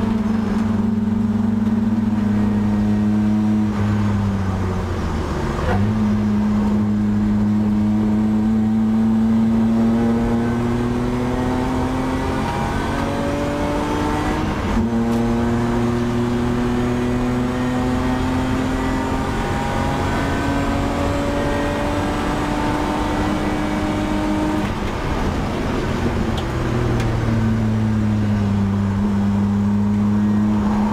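BMW E30 320i race car's straight-six engine, heard from inside the cabin, running hard under throttle. Its note dips and jumps back up about five seconds in, climbs slowly, drops sharply at a gear change about halfway, climbs again, then dips and picks up once more near the end.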